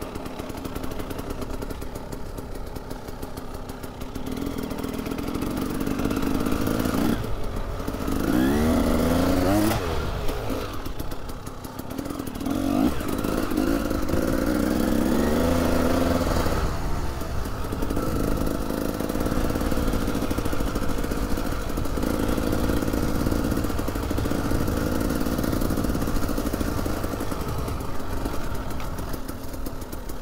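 KTM EXC 300 two-stroke single-cylinder enduro engine under way off-road, revving up and down with the throttle. The revs climb in rising sweeps about a quarter of the way in and again around the middle, then settle into a steadier drone.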